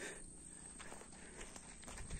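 Faint footsteps: a few soft, irregular ticks over a light steady hiss.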